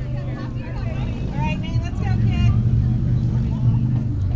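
A few voices calling out in the distance over a steady, heavy low rumble.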